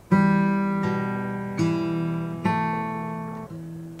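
Acoustic guitar fingerpicked over an E minor chord: a bass note and treble notes plucked one at a time, about five notes, each left to ring.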